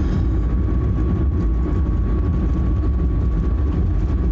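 Steady low rumble of a moving car heard from inside the cabin: engine and road noise, with a faint steady high tone running through it.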